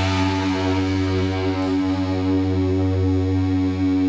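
The final chord of a garage-punk song held as a steady distorted drone on electric guitars and keyboard, with no drums, ringing out unchanged.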